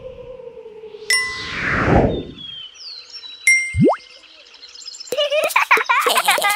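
Cartoon sound effects: a bright ding with a falling whoosh, then a second ding followed by a quick rising zip. Near the end comes a busy flurry of tinkly, chime-like sounds.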